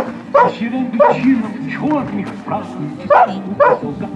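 A dog barking in short, high barks, about six of them in quick pairs, over background speech and music.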